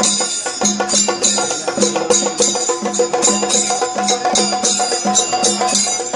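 Traditional Kerala temple percussion ensemble: drums and metal cymbals playing a steady, dense rhythm, with a low drum pulse about three times a second under bright clanging.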